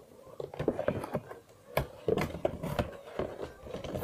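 Cardboard toy box being handled and folded by hand: irregular taps, scrapes and rustles of the card.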